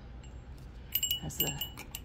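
Small metal souvenir bell hanging on a wall mount, jingling with several quick, high, clear rings as it is handled, starting about a second in.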